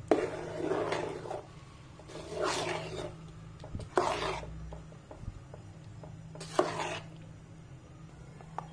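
A spoon stirring thick harees in a pot: four scraping, squelching strokes about two seconds apart, over a low steady hum.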